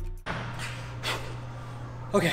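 Background electronic music cuts off right at the start, leaving a steady low hum and a man breathing hard after a heavy squat set, with a couple of soft exhales.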